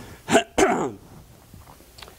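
A man clears his throat with two short, loud coughs about half a second in, then the room goes quiet.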